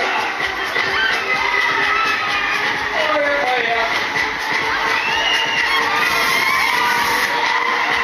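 Spinning fairground thrill ride in full motion: riders screaming and shouting over loud ride music, with a steady high tone running through it.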